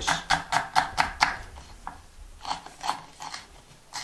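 Kitchen knife chopping on a wooden cutting board in quick, even strokes, about four or five a second, pausing for about a second in the middle before a few more strokes.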